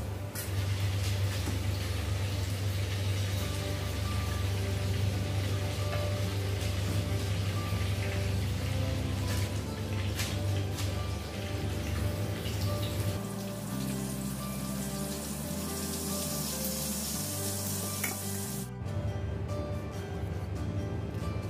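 Chicken pieces deep-frying in hot oil in a saucepan on a gas stove, a steady sizzle that cuts off sharply near the end.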